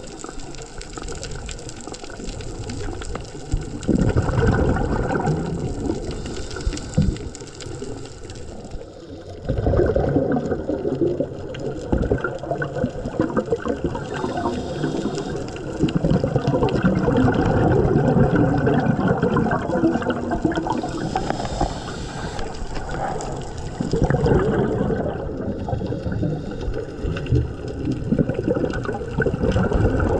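Scuba diver breathing through a regulator underwater: exhaled bubbles gurgle out in four long surges, several seconds apart.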